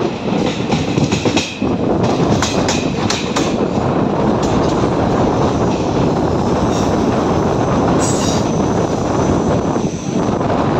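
Passenger train coach running at speed: a steady rumble, with wheels clattering over rail joints in the first few seconds. About eight seconds in comes a brief high squeal, which fits wheels working round the curve.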